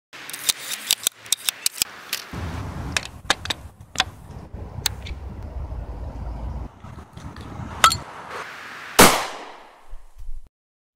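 Handling noise: a quick run of sharp clicks and knocks, then a low rumble with scattered clicks, ending in one loud crash-like hit with a ringing tail about nine seconds in.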